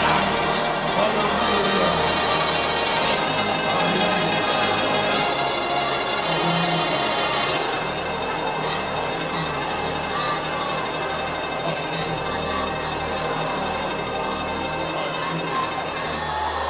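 Church worship music with sustained keyboard chords and bass notes that change every second or two, under a congregation's many voices singing and praying aloud together.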